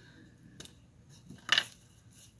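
A few faint clicks, then a sharper double click about a second and a half in, from a small cosmetic item being handled, likely an eyeliner being opened.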